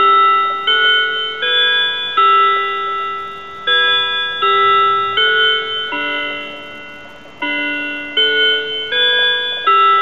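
Clock chimes: bell notes ring out in phrases of four, about one note every three-quarters of a second. Each note strikes and fades, with a short pause between phrases.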